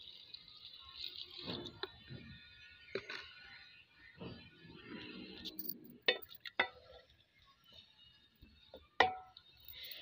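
The end of water being poured into an aluminium cooking pot, then a few sharp metallic clinks of a utensil against the pot, the loudest about nine seconds in.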